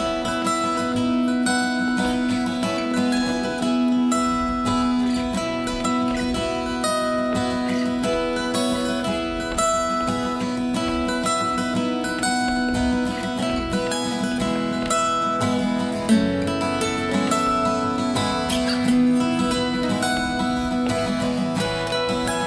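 Two acoustic guitars fingerpicked together in an instrumental introduction: a stream of quick plucked notes over a held low note, with a sharper accent about sixteen seconds in.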